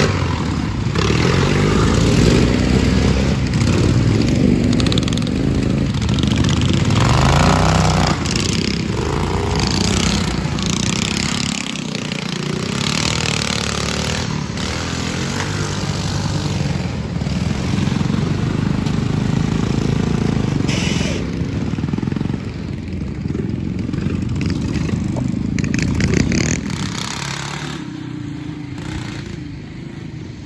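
Small engines of modified lawn tractors revving as they drive through mud, the pitch rising and falling with the throttle. The sound drops off over the last few seconds.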